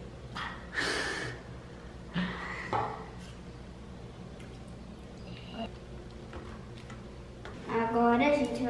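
Quiet room with a steady low hum and a few short breathy noises from a person, the loudest about a second in.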